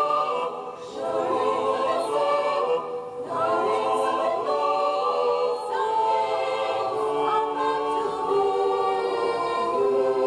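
An a cappella choir singing, several voices holding chords together without instruments, with short breaks between phrases about one and three seconds in.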